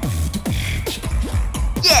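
Solo beatbox routine by a Korean beatboxer: a steady beat of deep bass kicks, about four a second, with snare and hi-hat sounds made by mouth.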